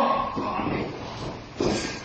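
A sudden heavy thud on the wrestling ring about one and a half seconds in, fading away with the echo of a large hall.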